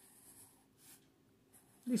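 Felt-tip marker drawing a long straight line across paper: a faint, soft stroke sound.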